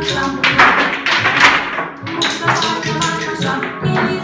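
A recorded children's song plays while a group of preschool children tap out its rhythm together, regular sharp taps sounding over the music.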